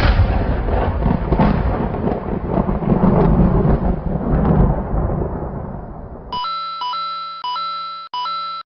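A deep, noisy rumble like thunder that slowly fades away over about six seconds. Near the end it gives way to a steady electronic tone that repeats in short, chopped half-second pieces.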